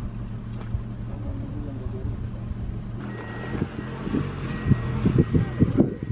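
Safari van's engine idling steadily; from about halfway it is joined by irregular knocks and rattles, growing louder toward the end, as the van works over a rough, muddy track.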